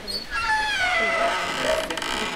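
A domestic cat meowing: one long meow falling slowly in pitch.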